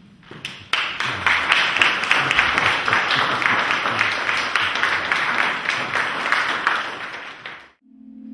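Audience applauding: a few claps about half a second in swell at once into steady applause, which dies away just before the end.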